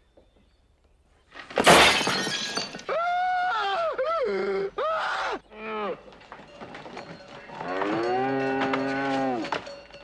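A loud crash of something breaking about a second and a half in, then a cow mooing: a few short calls that bend in pitch, then one long, steady moo near the end.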